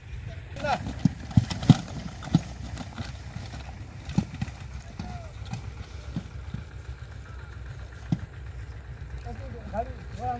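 A horse and its heavily loaded cart on rough ground: a quick run of sharp knocks and clatter in the first couple of seconds, then scattered single knocks, over a steady low rumble. Men call out to the horse near the end.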